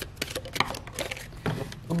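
A round box of cards being opened and the cards handled: a series of light, irregular clicks and taps.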